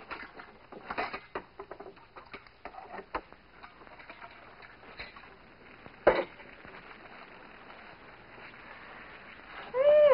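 Light clicks, knocks and clatter of hands rummaging through a kitchen cupboard for a can opener, with one sharp, louder knock about six seconds in.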